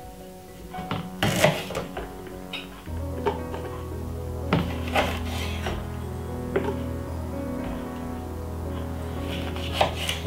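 A kitchen knife cutting fresh ginger on a wooden chopping board: a handful of scattered knocks and scrapes, over steady background music whose bass comes in about three seconds in.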